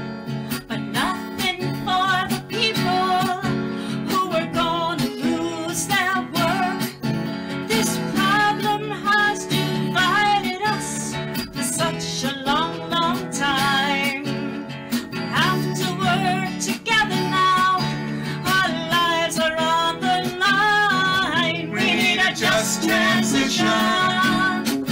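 A woman singing a folk-style song over a strummed acoustic guitar.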